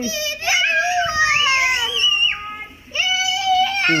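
A young child's high-pitched, drawn-out squealing: a wavering call that glides up and down, then after a short pause a second long, level note.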